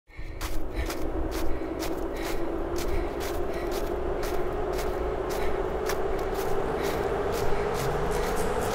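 Intro sound design under a logo animation: a low hum that slowly rises in pitch throughout, with scattered sharp ticks about twice a second over a low rumble, building toward the drum-led music that follows.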